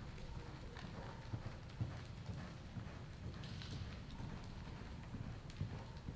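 Hoofbeats of a loping horse on soft arena dirt: dull low thuds in an uneven, rolling rhythm.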